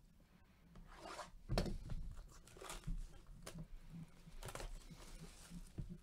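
The packaging of a Bowman Chrome trading-card box being torn open by gloved hands: a series of short tearing and rubbing rasps, the loudest about one and a half seconds in.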